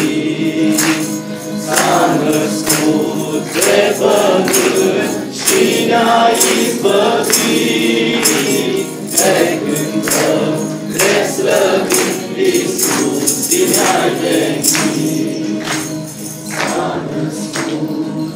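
A mixed choir of young voices sings a Romanian Christmas carol (colind), with jingling percussion strokes repeating through the song.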